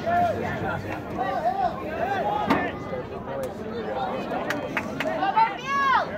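Soccer players and sideline spectators shouting and calling out during play: short rising-and-falling calls one after another, with a few sharp knocks and one louder shout near the end.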